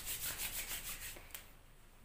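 Two palms rubbing briskly together, about seven strokes a second, fading out after about a second and a half, with one small click near the end.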